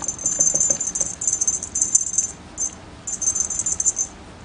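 A small jingle bell on a feather wand cat toy, jingling in quick bursts as the toy is shaken, with a brief pause past the middle.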